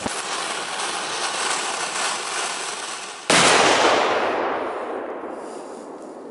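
A Funke 'Big Assorted Flowers' ground firework burning with a steady hiss, then a single loud bang a little over three seconds in that dies away slowly.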